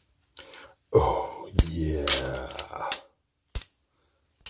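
Clear plastic protective film being peeled off a handheld remote control, with sharp crackles and a few clicks. A man's voice murmurs low for about two seconds in the middle.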